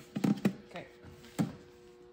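A few light wooden knocks as a painted wooden pantry box is handled, the sharpest about two-thirds of the way in, over a faint steady hum.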